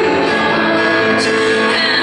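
Live solo grand piano played with a woman singing over it: a Bösendorfer concert grand and female vocal, steady and continuous.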